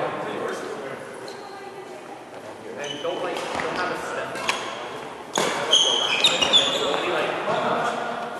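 Badminton rally: rackets strike the shuttlecock with a few sharp smacks, the loudest a little past the middle. A burst of shoe squeaks on the court mat follows right after it.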